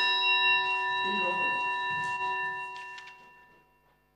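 The Speaker's small metal desk bell ringing out after a single strike, its several tones fading away over about three and a half seconds. It signals that the sitting of parliament has been closed.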